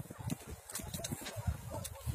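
Footsteps crunching through deep snow, a string of irregular crunches.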